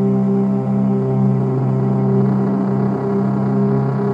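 Background music: a sustained, steady ambient drone of held low notes.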